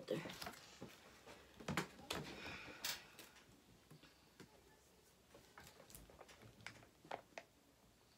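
Faint handling sounds: scattered small clicks and a short plastic rustle as a plastic icing bag and gingerbread kit pieces are handled on a tabletop, in a small room.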